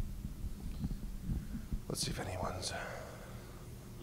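Soft, indistinct murmured speech over a steady low hum, with a couple of sharp hissing s-sounds about two seconds in.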